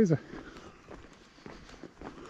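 A man's laugh tails off at the very start, then faint footsteps of a person walking on a paved street.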